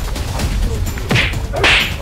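Two quick whooshing swishes, about a second in and again half a second later, the first sweeping down in pitch: swoosh sound effects laid over punches in a staged brawl.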